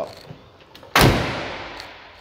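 The tailgate of a 2016 Ram 2500 pickup slammed shut once, about a second in: a loud, solid metal slam that echoes briefly as it dies away.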